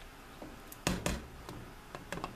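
Wooden spoon stirring soup in a large metal stockpot, with two sharp knocks of the spoon against the pot about a second in and a few fainter taps around them.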